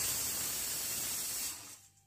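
Aluminium pressure cooker blowing steam out past its weighted vent valve: a steady hiss that holds for about a second and a half, then dies away. This is one of the cooker's whistles, the sign that it has come up to pressure.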